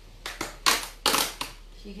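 Several short, sharp handling noises from things being moved about on a kitchen counter, the loudest about a second in, followed by a short laugh near the end.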